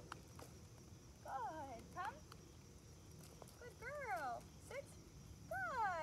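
A woman's voice calling out in short, high, sing-song phrases about five times, coaxing and cueing a puppy through obedience commands; the last call, near the end, is the loudest.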